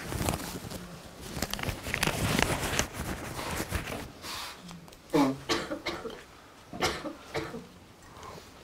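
Fabric and a paper tissue rustling against a clip-on lapel microphone as the wearer handles his vest pocket, crackly and dense for the first three seconds or so. Two short throat sounds follow, about five and seven seconds in.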